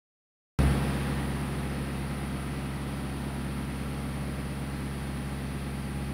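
Steady drone of a sailboat's engine running under way, cutting in about half a second in and holding an even pitch throughout.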